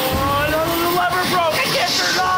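A young man's long, high-pitched yell that rises steadily in pitch, then breaks off near the end.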